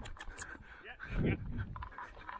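Breathing and footsteps of a cricket batsman running between the wickets, close to a helmet-mounted camera, with scattered short knocks. A brief called word about a second in.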